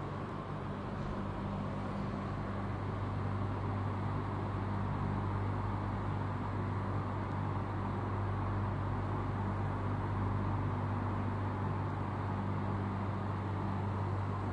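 Electric box fan running steadily: an even whir with a low motor hum underneath.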